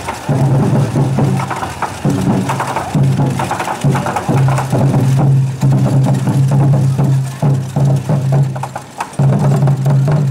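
Festival float music: a low pitched tone held in phrases of a second or two, with short breaks, over rapid wooden clicking percussion.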